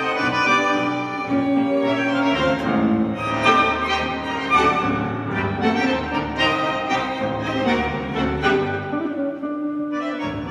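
Tango orchestra playing live: two bandoneons and violins over double bass, piano and guitar, in a continuous ensemble passage.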